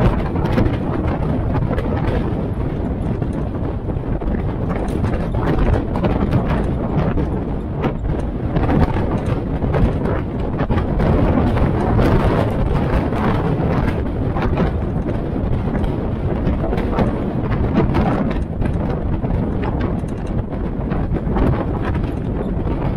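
Military-style Jeep driving along at a steady pace: its engine running continuously under the hood, mixed with frequent small knocks and rattles of the body and road noise.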